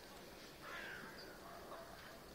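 A faint bird call, heard once a little over half a second in, over quiet outdoor background.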